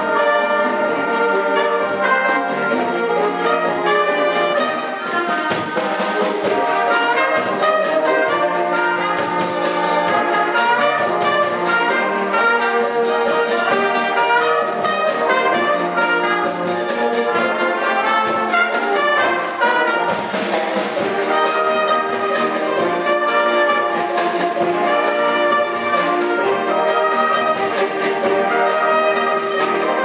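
Concert wind band playing a cha-cha, brass leading over saxophones and clarinets with a steady percussion beat. A cymbal swell comes about twenty seconds in.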